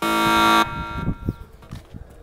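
A loud, steady electronic buzz that starts suddenly, lasts about two-thirds of a second and cuts off abruptly, followed by faint background noise with a few light taps.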